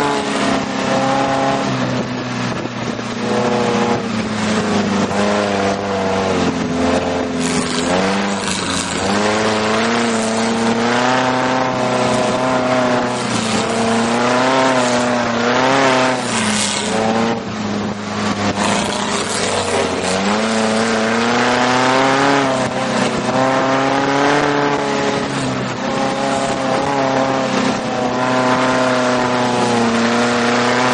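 Dune buggy engine running hard over sand dunes. Its pitch rises and falls every few seconds as the throttle is opened and eased, over a steady rush of wind and sand noise in the open cockpit.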